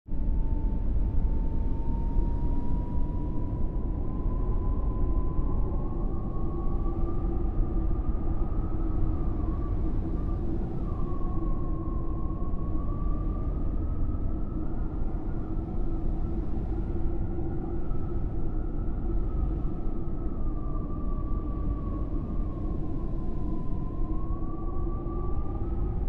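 A steady low rumbling drone under a thin, whistling tone that slowly drifts up and down in pitch.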